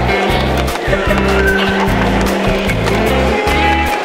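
Music with a heavy bass line of held notes and a steady, quick beat.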